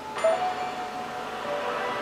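A chime-like struck note sounds a fraction of a second in and rings on, slowly fading; it marks the start of the show's break music.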